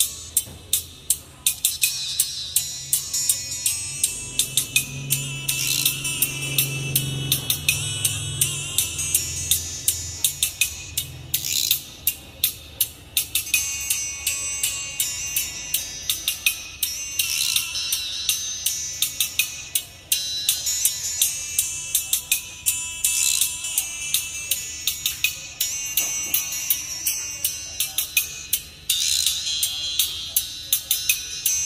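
Recorded music played through Pioneer WT-A500 titanium-diaphragm super tweeters: a bright, treble-heavy sound led by crisp percussion ticks several times a second, with little bass.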